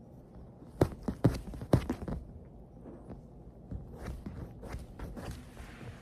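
A cockatoo playing rough with a plush toy on a leather sofa. Its beak and feet make sharp taps and knocks, several in quick succession between about one and two seconds in, followed by softer scattered taps and scuffing rustles.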